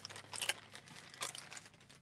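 Faint crinkling and light handling noises, a few scattered short crackles and ticks, as a makeup sponge wedge is taken from its packaging and set down on the stencil.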